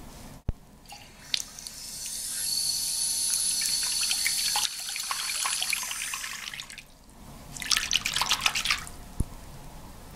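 A bathroom sink tap runs a stream of water into a sink whose drain is clogged, so the water pools instead of draining. The running water starts about a second and a half in and stops about seven seconds in. A shorter, choppier splash of water follows about eight seconds in.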